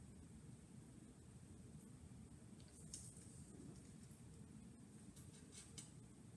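Near silence: room tone, with a few faint scratches of a pencil writing on paper about halfway through and again near the end.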